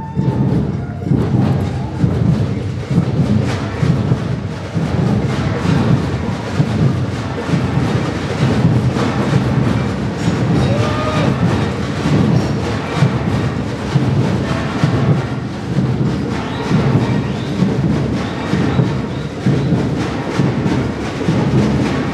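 Loud live music from a large ensemble, driven by a steady, pounding beat of about two pulses a second.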